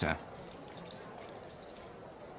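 A bunch of keys jingling as they are put into a security tray, a brief jingle in about the first second that then dies away.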